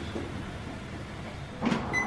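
Electric toilet's motorised lid lifting open with a soft whir over a steady low mechanical hum, a short sound near the end.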